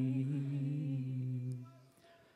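A single low note held steady, with a slight waver in its upper overtones, fading away near the end.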